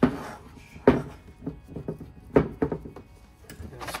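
Heavy metal brake caliper being handled on a workbench: a few sharp thunks and knocks with lighter clicks between. Near the end, a plastic drip tray scrapes as it is dragged across the bench.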